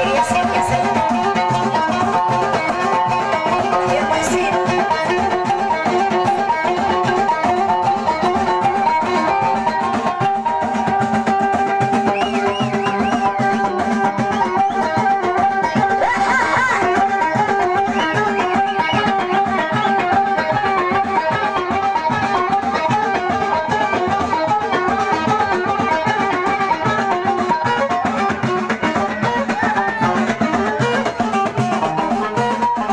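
Live Moroccan folk band playing instrumental music: a busy plucked-string melody over a steady drum beat, with no singing.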